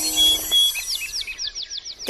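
Birds chirping: a quick run of short high chirps, about six or seven a second, fading toward the end, as a held musical note dies away about half a second in.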